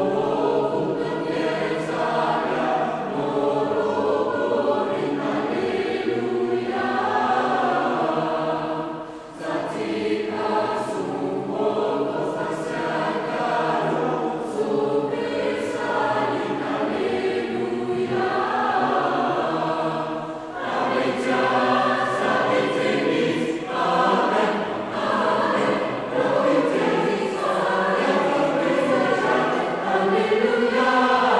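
Mixed choir of men's and women's voices singing Armenian sacred music in several parts, with a short break between phrases about nine seconds in.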